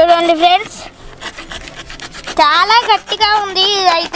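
A box-cutter blade scraping and cutting through plastic packing strap on styrofoam, with a high voice making two drawn-out sounds of wavering pitch: one brief at the start, and a longer one over the last second and a half.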